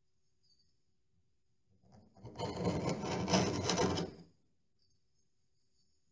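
Hand tool working old paint off a wooden door frame edge: one scraping stroke about two seconds in, lasting a little over two seconds.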